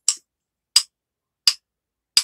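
Wooden rhythm sticks tapped together three times in a slow, even beat, one sharp click about every 0.7 s.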